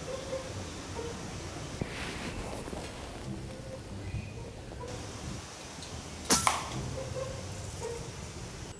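A single air rifle shot about six seconds in: one sharp, short report with a brief tail, over a low steady background.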